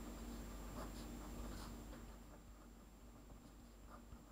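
Faint scratching of a pen writing on paper in short strokes, fading away about halfway through.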